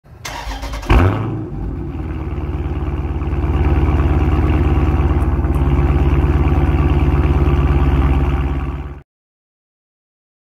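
A car engine is cranked by the starter and catches about a second in, heard from the exhaust. It then settles into a steady, pulsing idle that grows a little louder after a few seconds and cuts off suddenly near the end.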